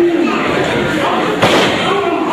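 A single loud slam of a wrestler's body hitting the ring canvas about one and a half seconds in, heard over shouting voices.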